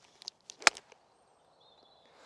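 A golf wedge striking the ball on a pitch shot: one sharp, short click of impact about two-thirds of a second in, with a few faint ticks of the downswing just before it.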